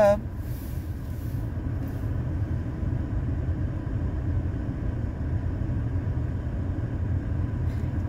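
Steady low rumble inside the cabin of a parked car with its engine idling.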